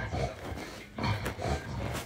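An animal's low vocal sounds, repeated in short, uneven bursts about twice a second.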